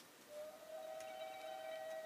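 A faint, steady ringing tone with several overtones that fades in about a third of a second in and holds.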